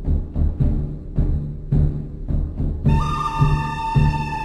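Music with a heavy, booming low drum beat about twice a second. A higher melodic line of held tones comes in about three seconds in.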